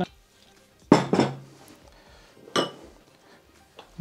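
Kitchenware being handled: a heavy knock with a short ring about a second in, and a lighter clink with a ringing tone a little past halfway, as a large glass bottle and a stand mixer's steel bowl are moved about on a wooden table.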